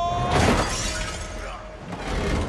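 A sudden loud crash with a shattering edge about half a second in, as a body smashes down onto a car's roof rack, then dies away over about a second. A held note of the film score breaks off at the impact, and music carries on faintly beneath.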